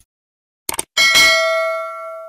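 A few short clicks, then about a second in a single bright bell-like chime that rings and slowly fades: an outro sound-effect sting.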